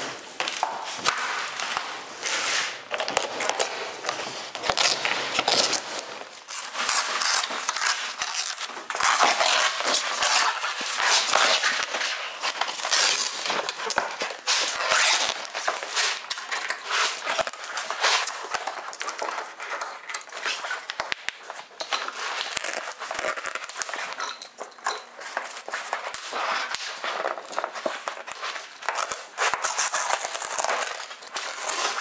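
Stiff, coated aircraft fabric being torn and peeled off a biplane wing's ribs: continuous crackling and crinkling with frequent sharp rips.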